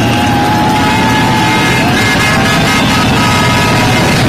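A group of motorcycle engines running as the bikes ride slowly past in a column: a steady, loud rumble with a few held, slightly wavering tones above it.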